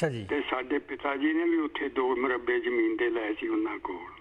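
Speech only: a voice talking continuously, thin and cut off above and below as over a telephone line.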